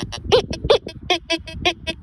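Tianxun TX-850 metal detector beeping at a silver ring held over its search coil, the tone it gives for silver. A rapid series of short electronic beeps, about five a second, the first ones gliding up in pitch.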